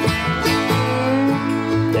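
Acoustic bluegrass band playing a slow song, with picked acoustic guitar and other plucked strings over held notes.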